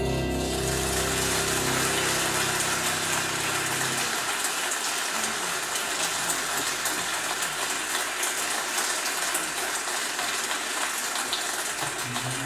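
Audience applause rising over the orchestra's last held chord, whose notes fade out within the first few seconds, then steady clapping.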